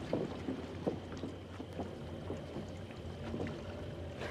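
Waterside ambience on a wooden dock: a low steady hum with water lapping and soft, irregular knocks scattered throughout.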